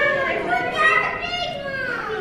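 Children's high-pitched voices talking and calling out.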